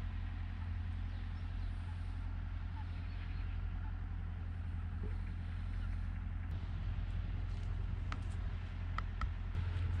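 A tractor engine running steadily in the background: a low, even drone that holds without change. A few faint clicks come near the end.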